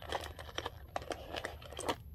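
Clear plastic cosmetic pouch crinkling and clicking as it is handled and a small jar is taken out of it, with one sharper click near the end.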